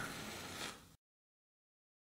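Near silence: a faint hiss fades out in the first moment, then the sound cuts to total silence.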